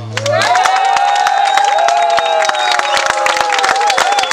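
Audience clapping and cheering as a song ends, with one long cheering call held above the claps. The band's last chord dies away in the first half second.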